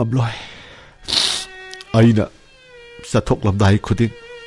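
A voice making short, wavering vocal sounds between breathy gasps, over soft background music with a long held note from about three seconds in.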